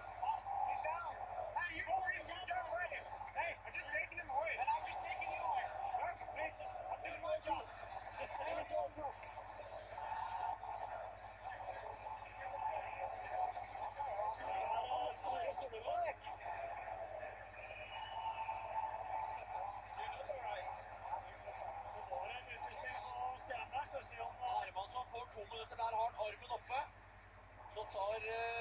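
Voices in an ice hockey arena: many people shouting and talking over one another during a scuffle at the boards.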